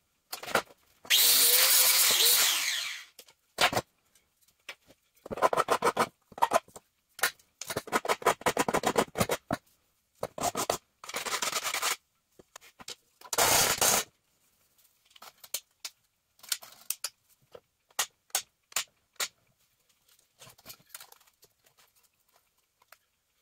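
Metal scraping and scratching from hand work on small steel pieces, in short bursts cut apart by abrupt silences. The longest and loudest scrape comes about a second in, and rapid runs of small scratches follow in the middle.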